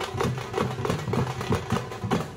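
Thappu frame drums beaten with sticks in a fast, even rhythm, backed by a large barrel drum. A motorcycle engine runs close by underneath the drumming.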